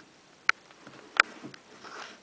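Chinchillas moving about in a glass cage with wood-shaving bedding: two sharp clicks about two-thirds of a second apart, then faint rustling near the end.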